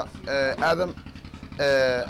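A man speaking in short phrases, over a steady low, evenly pulsing engine-like hum in the background.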